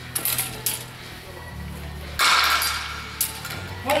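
Steel longswords clashing in a fencing exchange: a few sharp metallic clinks in the first second, a louder, longer burst of noise about two seconds in, then another strike, over a low steady hum.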